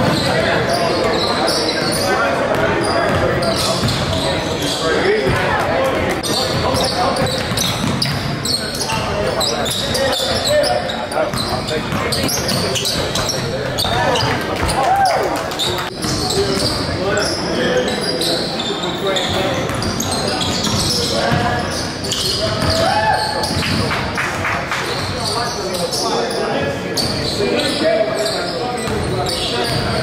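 Live basketball game sound in a gym: a basketball bouncing on the hardwood floor under a steady mix of voices from players and spectators, echoing in the large hall.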